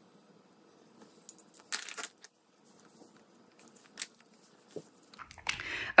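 A lip liner pencil is drawn across the lips close to the microphone, giving a few short, soft clicks and scratchy rustles between quiet stretches.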